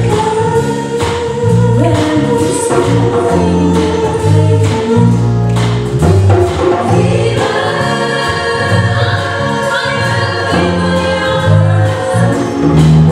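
A choir singing in harmony with band accompaniment over a steady, pulsing bass line. The voices hold long notes, then swell into a fuller, higher chord about seven and a half seconds in.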